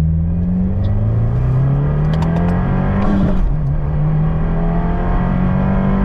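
Subaru WRX turbocharged 2.4-litre flat-four at full throttle, heard from inside the cabin: revs climb steadily in second gear, there is an upshift about three seconds in, then revs climb again in third. The engine is running a JB4 custom map at about 23 psi of boost.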